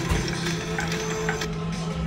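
Three-reel slot machine spinning: a steady electronic tone over casino hum, with a few short clicks about a second in as the reels come to a stop.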